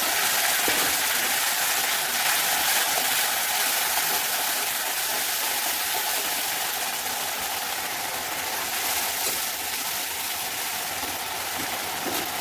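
Tomato purée sizzling in hot oil with fried onions in a kadhai as it is stirred with a spatula: a steady sizzle that settles down a little over the seconds.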